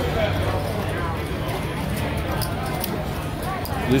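Steady background din of a casino table game area: a murmur of other people's voices, with a few light clicks, about two to three seconds in, from chips or cards being handled at the table.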